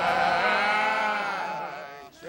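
Gospel choir holding a long sung note with heavy vibrato, the band underneath dropping away; it fades out near the end.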